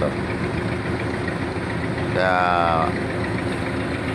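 A utility boom truck's engine idling steadily.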